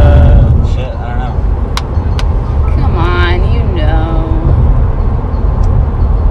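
Steady low rumble of road and engine noise inside a moving car's cabin. Short vocal sounds come and go over it, and two sharp clicks fall about two seconds in.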